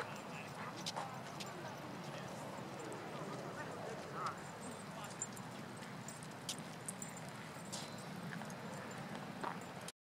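Faint outdoor ambience with scattered light clicks and taps at irregular times, and faint distant voices.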